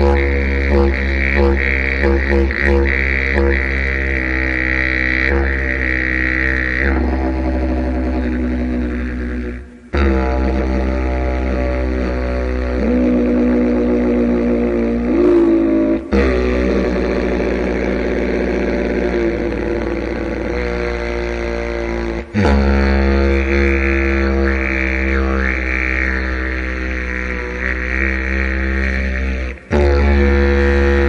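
Didgeridoo played with circular breathing: one continuous low drone with shifting overtones, shaped by the player's voice. It drops out briefly a few times.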